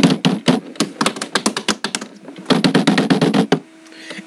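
Typing on a computer keyboard: a fast run of key clicks with a short pause about halfway, stopping shortly before the end.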